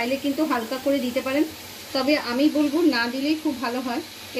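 Oil sizzling in a wok as onion and spice paste fry, a steady hiss that comes through alone in a short pause about a second and a half in.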